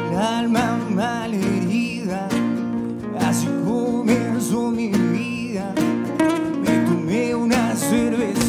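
Acoustic guitars strumming a song's accompaniment, with a man singing a melody over them.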